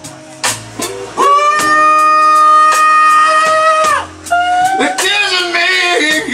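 Live electric blues band playing, with electric guitars, bass and drum kit. The first second is quieter, then a single pitched note bends up slightly and is held for about three seconds before the band comes back in with wavering melodic lines near the end.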